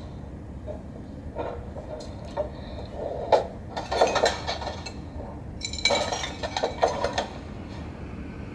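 Film trailer audio playing from computer speakers. It comes in short bursts of about a second each, with quieter gaps between them.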